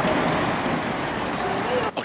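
Steady city traffic noise, cutting off suddenly just before the end, with a short laugh at the start.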